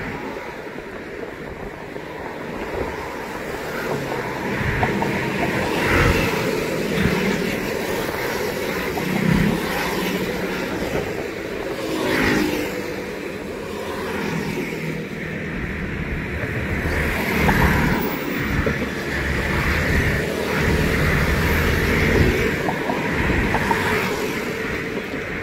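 Steady road traffic, cars and motor scooters driving past close by, the engine and tyre noise swelling and fading as each vehicle goes by.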